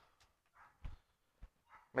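A dog barking faintly in the distance, a short bark or two about a second in; a dog that barks constantly until it gets its food.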